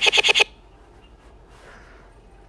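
A child's laughing voice played back from an edited clip, chopped into a rapid stutter of about five identical short repeats in half a second. The stutter comes from duplicating ever-shorter copies of the clip, the classic Sparta-remix edit.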